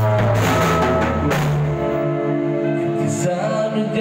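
A rock band playing live: electric guitar chords over a drum kit, with cymbal crashes at the start and again about a second in.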